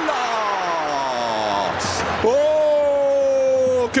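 A football commentator's long, drawn-out shout, sliding down in pitch for about two seconds and then, after a short break, held high and steady. It is his goal cry at a chance that only just misses the net.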